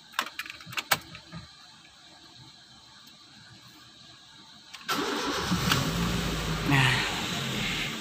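A few clicks, then about five seconds in the Honda City i-DSI's four-cylinder, eight-plug engine starts and settles into a steady fast idle. The engine is still running slightly rough, a misfire on one of its eight coils or spark plugs.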